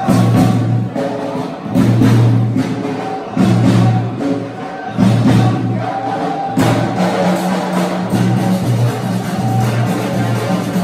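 Traditional Moroccan welcome music from a live troupe: large drum and frame drum beating a steady rhythm under low, held notes that repeat in phrases of about a second.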